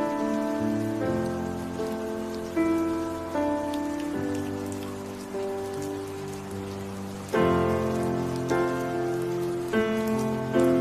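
Slow instrumental piano music, with notes and chords struck every second or two and left to fade, mixed over a steady rain recording with fine raindrop ticks.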